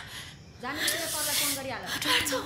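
A woman's hushed, breathy speech, one phrase starting just over half a second in, with strong breath hiss over the voice.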